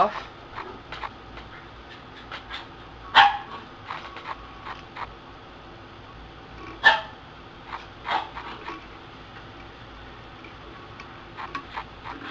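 A dog giving a few short barks, the clearest about three, seven and eight seconds in, with faint ticks in between.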